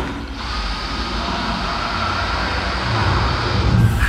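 Dyson handheld vacuum cleaner running: a steady whine over rushing air, with a deep rumble swelling near the end before it cuts off suddenly.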